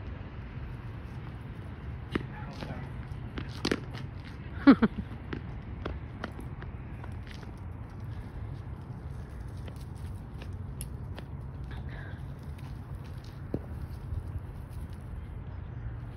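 A man laughing briefly about five seconds in, over a steady low rumble, with a few scattered light knocks before and after.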